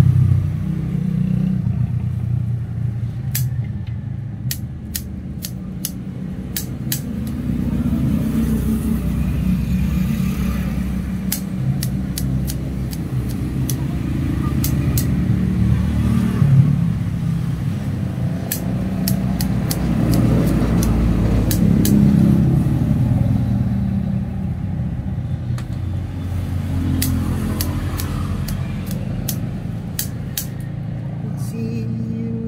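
Low rumble of passing road traffic that swells and fades several times, with scattered sharp clicks throughout.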